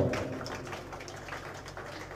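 Light applause from a small audience: many scattered hand claps.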